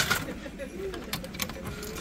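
A few sharp metallic clicks and clinks of 100-yen coins being handled and dropped into the coin slot of a gashapon capsule-toy vending machine.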